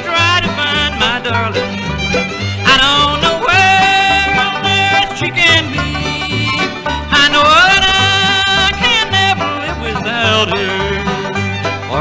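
Instrumental break of a bluegrass recording: a fiddle-led melody with sliding notes over banjo and guitar, with a steady alternating bass beat underneath.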